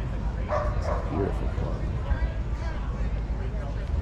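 Outdoor crowd background: voices of people nearby over a steady low rumble, with a brief cluster of louder voice sounds about half a second to a second and a half in.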